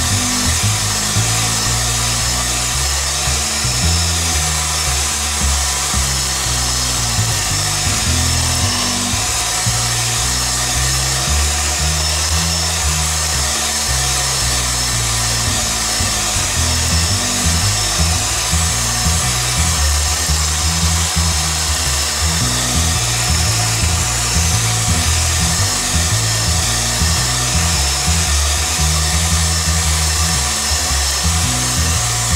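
Electric hand mixer with whisk beaters running continuously, whipping milk into mashed potatoes, with background music underneath.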